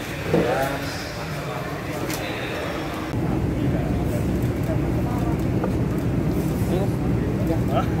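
Several people talking at a distance. About three seconds in, a steady low rumble joins the voices and runs under them.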